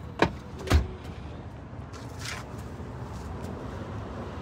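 Power-folding second-row captain's chairs of a GMC Yukon XL: two sharp knocks about half a second apart, the second with a heavy low thump, then a steady low hum from the fold mechanism.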